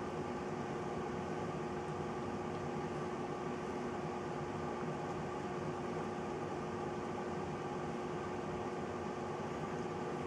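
Water heating to a boil around two submerged DC water heater elements: a steady bubbling hiss with a constant hum underneath.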